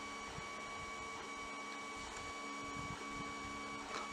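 Quiet room tone: a steady electrical hum with a faint high whine and low hiss, and no distinct events.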